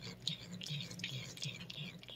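A cat licking a paste treat from a squeeze packet: soft, wet licking and smacking, with a breathy, hiss-like noise through most of the two seconds.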